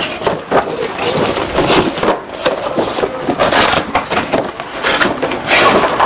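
Glossy paper catalogue pages being turned and handled, an irregular run of rustles, crackles and soft slaps of paper.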